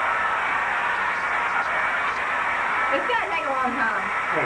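Handheld hair dryer running steadily, blowing on hair, a constant even hiss; a short spoken reply comes over it near the end.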